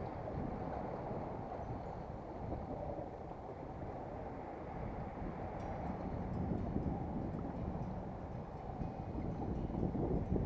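Steady wind noise on the microphone, with sea water lapping at the shore rocks.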